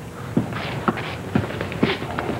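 Footsteps on a hard floor, about two steps a second.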